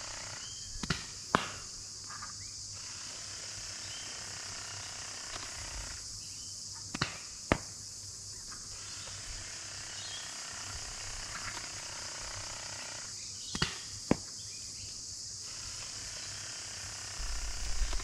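Air-powered Nerf Sledgefire blaster fired three times at 45 psi, each shot heard as a pair of sharp clicks about half a second apart, the shots about six seconds apart. A steady high drone of insects runs underneath.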